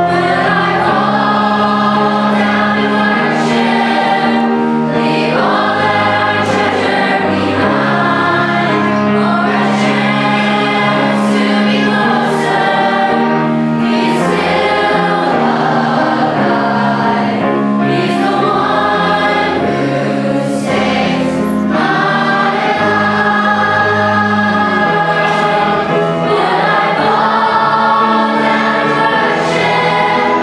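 Children's choir singing a Christian song in unison with instrumental accompaniment, in long sustained phrases over a steady bass line.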